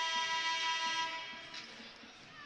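A steady held tone with several overtones, fading out from about halfway through.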